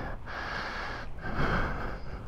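A person breathing close to the microphone: a few breaths in and out, each under a second, over a steady low rumble.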